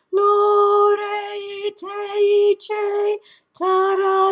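A woman singing unaccompanied in what she calls soul language. She holds long notes on nearly one steady pitch, broken by a few short gaps.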